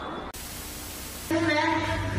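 A burst of static hiss about a second long, starting and stopping abruptly. Then a held voice comes in.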